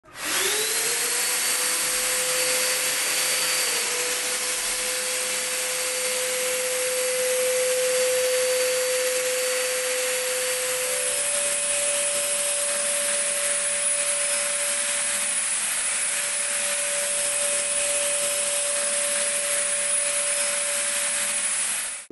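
Handheld electric ULV cold fogger spinning up with a rising whine in the first second, then running steadily, a constant whine over a blowing hiss. The whine steps up slightly in pitch about halfway through.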